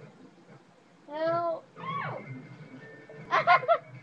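A young person's high-pitched wordless voice: a wavering sing-song call, then a falling one. About three-quarters of the way through comes a quick burst of giggling.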